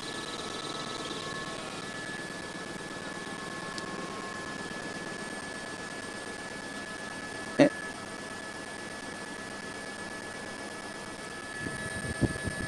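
Faint steady hiss from a news helicopter's live audio feed, with a thin steady tone through it and one short sharp blip about seven and a half seconds in.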